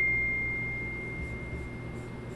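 A single high ringing tone, struck just before and fading slowly away, nearly gone by the end.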